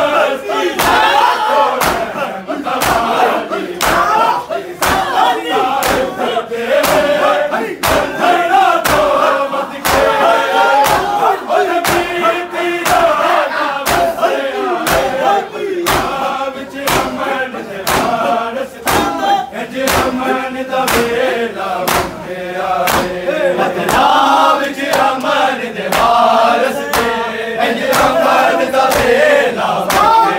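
A group of men chanting a noha together, over the steady rhythm of open palms slapping bare chests in matam, about three sharp slaps every two seconds.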